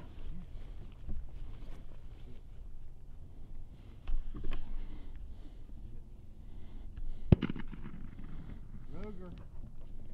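A single sharp shot about seven seconds in, the loudest thing heard, typical of the blank gun fired at the thrower's station to mark a single retrieve for a retriever in training. A brief pitched call follows about a second and a half later.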